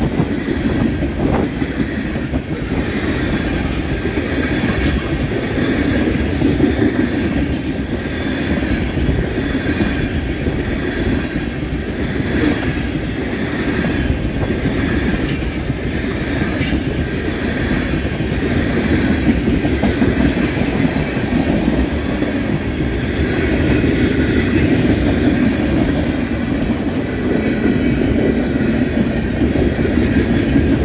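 Freight train's tank cars and boxcars rolling steadily past: a continuous rumble of steel wheels on rail with clacking over rail joints and a faint thin squeal above it.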